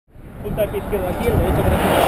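Indistinct voices over a steady low rumbling noise, fading in from silence in the first half second.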